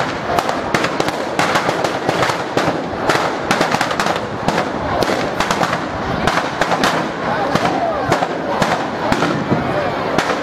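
Firecrackers going off inside a burning New Year's Eve effigy: a dense, irregular run of sharp cracks and bangs, several a second, with crowd voices underneath.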